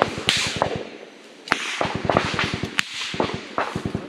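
Close-range automatic gunfire: a rapid string of shots for about the first second, a short lull, then scattered single shots and short bursts.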